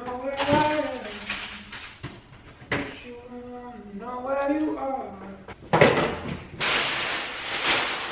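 A woman's voice without clear words, and kitchen handling noise as groceries are put into a refrigerator: a sharp knock a little under six seconds in, then about a second of rustling.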